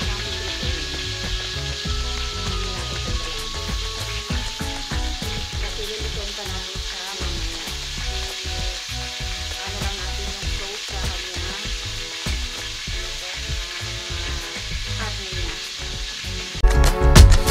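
Marinated beef slices frying in oil and marinade in a wok: a steady sizzle, with more pieces being laid into the pan.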